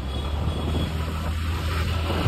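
Motor scooter engine running with a steady low hum while riding slowly along a street, slowly growing louder.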